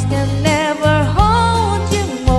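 A woman singing a slow pop ballad over an instrumental backing track with bass and drums, ending on a held note with vibrato.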